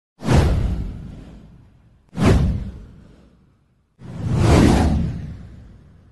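Three whoosh sound effects of an intro title animation. The first two hit suddenly with a deep low end and fade over a couple of seconds; the third swells up about four seconds in and then fades.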